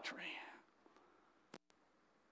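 The tail of a man's spoken word fading out, then near silence with one faint click about a second and a half in.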